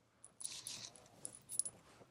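Faint handling noise: a few soft rustles and light clicks, about half a second in and again near the end.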